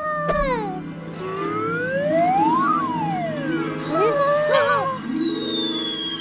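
Cartoon sound effects over background music: a slow whistle-like glide rises and then falls over the steady notes of the score, some short wobbling pitched sounds follow, and a long high tone slides downward near the end.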